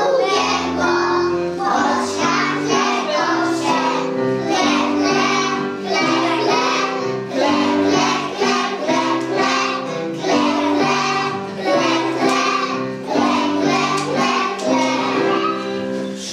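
A group of young children singing a song in unison over a musical accompaniment of steady held notes.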